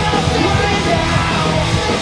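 A pop-punk band playing live: distorted electric guitars, bass and a drum kit, with shouted vocals over the top.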